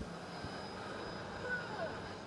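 Electric vacuum pump of a vacuum tube lifter running with a steady, even rushing noise.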